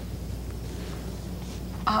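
Steady low hum with faint hiss under a pause in dialogue, with no other event; a voice begins right at the end.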